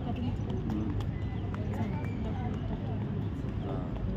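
Indistinct chatter of a crowd of people talking outdoors, over a steady low rumble, with a few scattered sharp taps.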